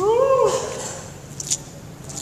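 A person's short vocal cry, about half a second long, rising then falling in pitch: a groan of dismay between rallies. A brief sharp squeak follows about a second and a half in.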